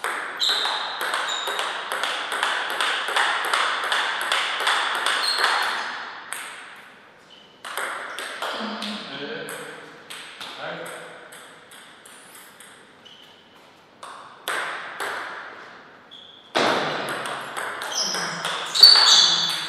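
Table tennis ball clicking off bats and table in a quick back-and-forth rally that stops about six seconds in. After a lull with a few scattered bounces, another rally starts near the end.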